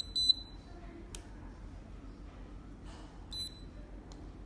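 Fipilock FL-P4 fingerprint padlock beeping as a finger on its sensor is read and it unlocks: two short high beeps at the start and another near the end. A sharp click comes about a second in.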